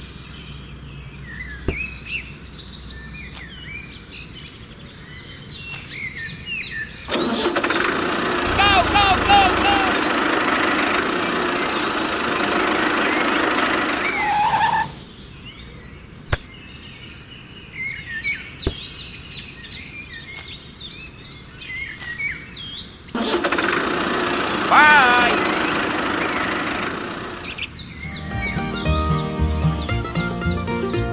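Birds chirping, broken by two loud stretches of engine-like noise lasting several seconds each, about seven seconds in and again about 23 seconds in. Rhythmic music comes in near the end.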